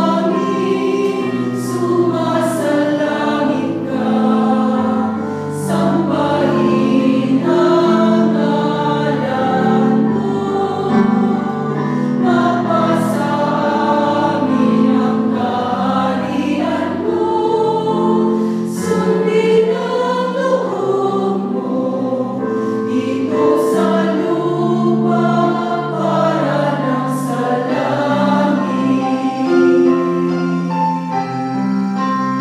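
Small group of women singing a hymn together in harmony, with held notes, a lead voice carried on a microphone.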